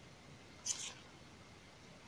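A brief high scrape of plastic craft wire strands rubbing against each other as they are handled in a knot, about two-thirds of a second in. Otherwise it is quiet room tone.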